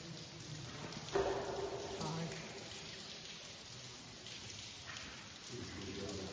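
Water dripping and trickling in a mine tunnel, a steady hiss of falling drops.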